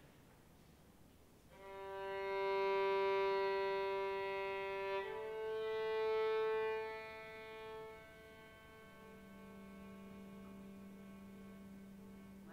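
Violin playing long sustained bowed notes: one held note, then a step up to a higher held note about five seconds in that fades away. A low steady tone sounds underneath and comes forward near the end.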